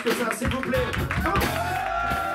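Live band playing: drum kit, electric guitar, keyboard and saxophones, with drum hits and moving notes, then a note held over the last half second.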